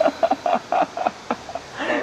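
A man laughing in a string of short chuckles, about four a second, before he starts to talk again near the end.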